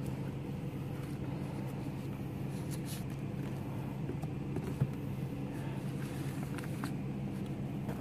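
A parked car's engine idling with a steady hum. One light knock about five seconds in comes from a book being pushed into the small wooden library box.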